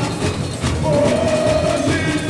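Samba-enredo sung live from a samba school's sound truck over its loudspeakers, with the bateria's drums underneath; the singer holds one long note from about half a second in.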